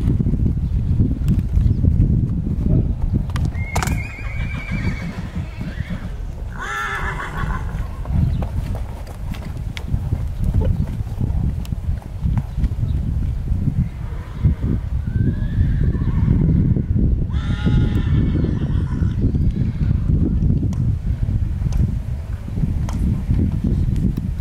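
Horses whinnying: two wavering calls a few seconds in and two more about two-thirds of the way through, over a steady low rumble.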